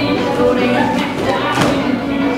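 A country song with a singer plays over the hall's sound system while line dancers' boots stomp and thump on the floor, the heaviest thump about one and a half seconds in.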